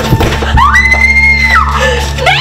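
A woman's scream: one high cry of about a second, rising in and dropping away at the end, over a steady low film score.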